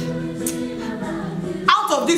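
Background music of held, sustained chords with a choir-like vocal sound, under a pause in the talk; a woman's voice comes back in near the end.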